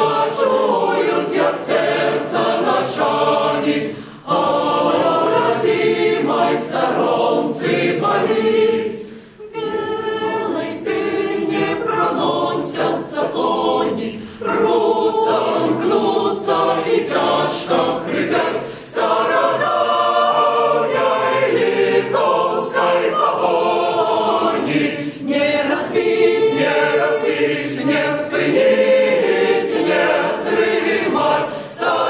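Mixed choir of men and women singing unaccompanied, several voices together, with short breaks between phrases.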